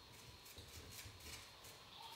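Faint, rhythmic rustling of a plastic hair pick pushed up and down through synthetic afro twist wig hair, about three strokes a second.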